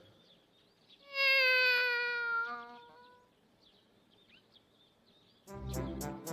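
A cartoon cat's single long meow, about two seconds long and falling slightly in pitch as it fades. Brassy background music comes in near the end.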